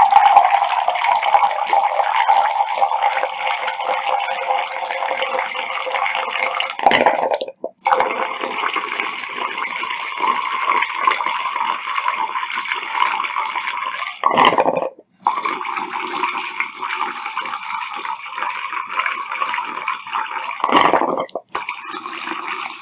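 Distilled water poured in a thin stream from a plastic jug into a glass measuring cup, splashing steadily, cutting out briefly three times.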